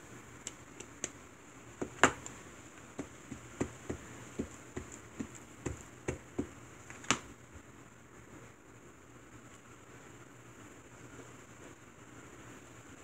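Light taps and clicks of an ink pad being dabbed onto a clear stamp mounted on an acrylic block, irregular, about two or three a second, the sharpest about two seconds in and about seven seconds in. After that only faint room tone.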